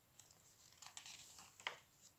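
A picture-book page being turned by hand: a faint rustle of paper with one short crisp flick about one and a half seconds in.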